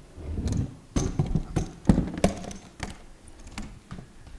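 Scattered knocks and thumps of people moving about on a stage, irregular and a few to the second.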